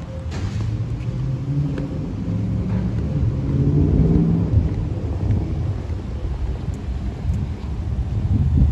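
A low rumble that grows louder around the middle and eases off again.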